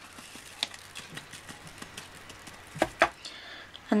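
Light taps and knocks of a decorated MDF heart being tapped to shake excess glass glitter off into a plastic tray, with the loudest knock near three seconds in.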